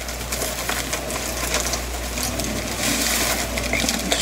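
Artificial baby's breath stems rustling and crackling as a bunch is handled close to the microphone.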